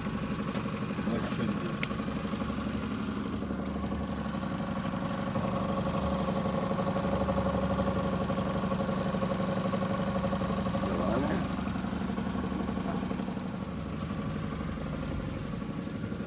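Mercury outboard motor running steadily at trolling speed.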